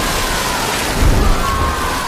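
Heavy water splash falling back down, a massive whale-sized crash of spray heard as a loud, dense rush that swells about a second in. A faint wavering high tone glides above it.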